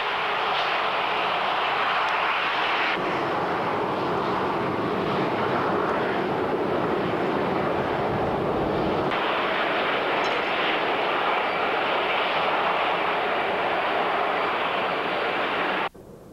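Jet airliner engines running in flight: a steady rushing noise that changes tone abruptly twice, about three and nine seconds in, and cuts off suddenly at the end.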